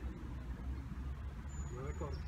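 Steady low rumble of outdoor background noise in a pause between words.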